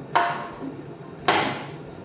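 Stainless steel stand-mixer bowl knocked twice against metal, about a second apart, each knock ringing briefly as the last of the génoise batter is emptied out.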